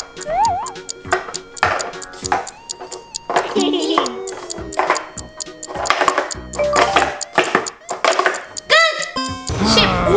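Background music over quick, repeated clacks of red plastic speed-stacking cups as they are stacked into pyramids and swept back down.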